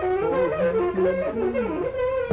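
Alto saxophone improvising a bluesy line, a quick run of notes with pitch bends, played along over a recording of a blues-rock song.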